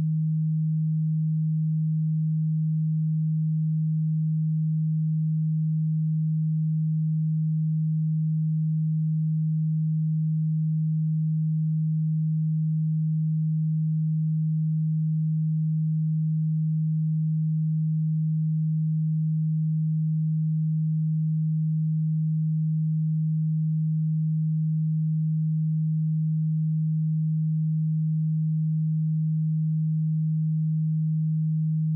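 A single steady low pure tone, held at one pitch and an even level with no pulsing: a binaural-beat sine tone from a brainwave-entrainment track.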